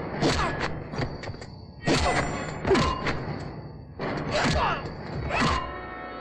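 Film fight sound effects: a string of heavy blows and thuds, several in quick pairs, each with a falling swoosh, over background action music.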